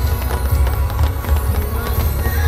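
Fireworks crackling and popping in rapid succession over loud show music with a deep, continuous bass.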